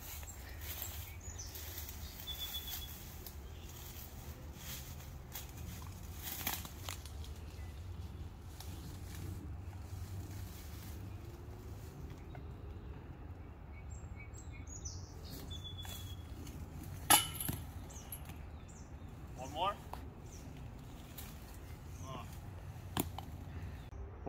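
Woodland ambience with a steady low rumble and a few short bird chirps, broken by one sharp knock about seventeen seconds in, the loudest sound here.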